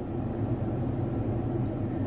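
Car engine idling, heard from inside the cabin: a steady low rumble.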